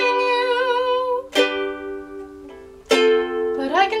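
Ukulele strummed by hand, fresh chords struck about a second and a half in and again near three seconds, each left to ring out. A voice holds a wavering note at the start, and singing comes back in at the very end.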